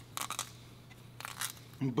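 Faint, short scraping strokes of a chicken bone rubbed against the painted wooden barrel of a baseball bat, over a steady low hum.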